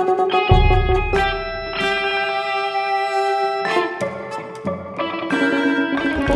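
Live contemporary ensemble music from electronic wind instruments (EWIs), electric guitar, keyboard, percussion and cello: sustained chords that shift every second or two, with a deep low note coming in about half a second in.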